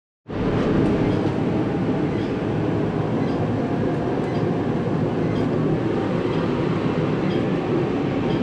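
Garage space heater running: a loud, steady rushing noise with no pitch, unchanged throughout, with a few faint clicks over it.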